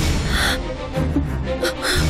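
Dramatic background-score sting: a sudden low hit at the start, then held low tones with two short breathy swishes, about half a second in and near the end.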